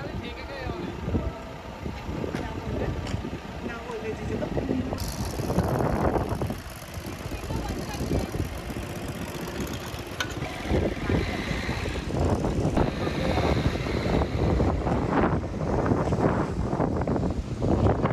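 Vehicle noise with indistinct voices mixed in. A high hiss joins about five seconds in.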